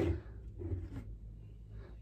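Quiet room with a low steady hum and a few faint handling sounds as a drink can is picked up.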